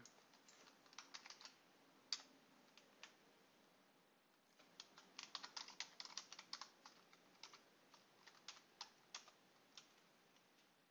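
Faint computer keyboard typing in uneven bursts: a few keystrokes about a second in, a quick run of keystrokes in the middle, then scattered single keys near the end.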